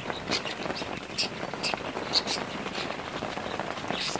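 Rain falling on a clear plastic cover overhead: a steady hiss with scattered, irregular drop ticks.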